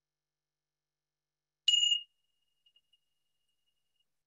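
A meditation bell struck once, giving a bright, high ring that dies away quickly and then trails off faintly. It signals the end of a mindfulness practice.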